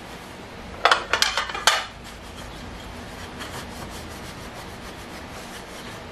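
Cloth towel rubbing over removable nonstick waffle-maker plates, with a short run of four or five hard clanks about a second in as the plates are handled and knock together.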